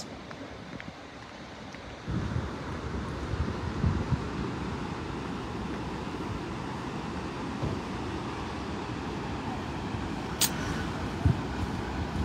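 Steady outdoor noise of wind buffeting the microphone over distant surf, getting louder about two seconds in.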